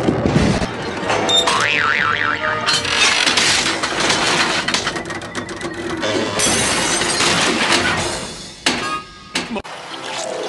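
Cartoon sound effects cut together over background music. There is a warbling tone about a second and a half in, then a long stretch of clattering, crashing noise, and a few short knocks near the end.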